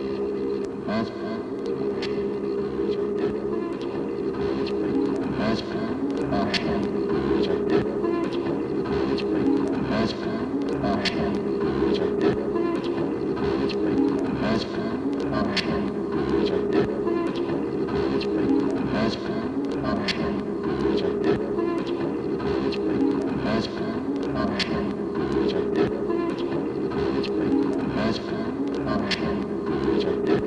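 Experimental sound-poetry music built from layered, sound-on-sound tape loops. It is a dense, continuous band of wavering overlapping tones, cut through by frequent sharp accents.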